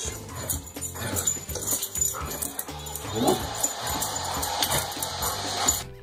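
Golden retriever vocalising excitedly at a tennis match on TV, over background music with a steady bass line.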